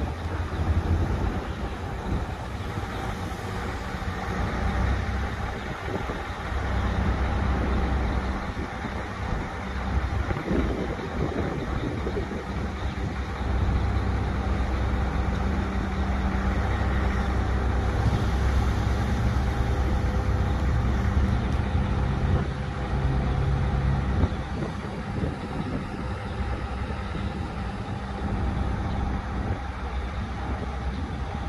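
Mobile crane's diesel engine running steadily as it hoists a commercial rooftop unit. It revs up for stretches about 7 s and about 13 s in, then drops back near idle about 24 s in.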